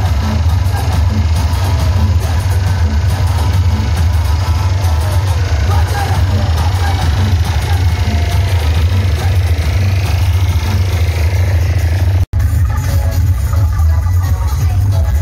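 Loud DJ dance music played through a large outdoor speaker stack, with heavy bass and a steady beat. The sound cuts out for an instant about twelve seconds in.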